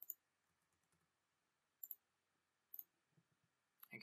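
A few faint, sparse clicks of a computer keyboard and mouse over near silence: a quick pair at the start, then single clicks about two seconds in, near three seconds and just before the end.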